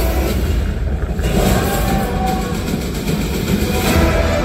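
Film soundtrack over cinema speakers: a loud, steady deep rumble with a noisy wash above it.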